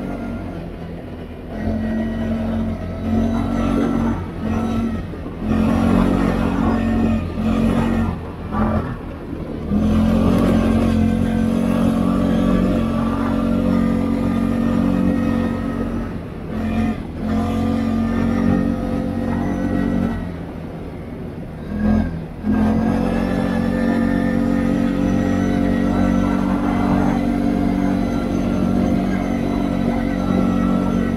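CFMoto CForce 520L ATV's single-cylinder engine running under power up a gravel trail, a steady drone that dips briefly when the throttle is eased off, about two seconds in, around eight to ten seconds, around sixteen seconds and around twenty to twenty-two seconds.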